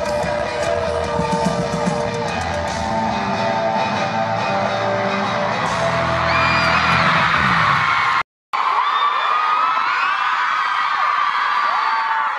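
Live pop band music with a crowd screaming over it, heard from within the audience. Just past two-thirds of the way in the sound cuts out for a split second. After that the music is gone and only the crowd's high-pitched screaming and cheering remains.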